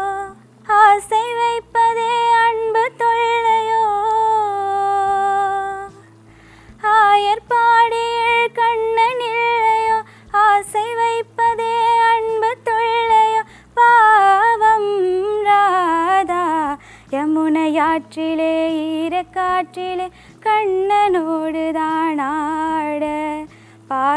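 A young woman singing solo: long held notes that waver in pitch, with a short break about six seconds in and faster winding phrases in the second half.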